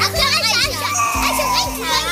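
Several children's voices chattering and calling out together over a background music bed with steady low notes.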